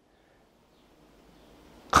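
A pause in a man's speech: near silence with a faint hiss of room noise that grows slowly, then his voice starts again right at the end.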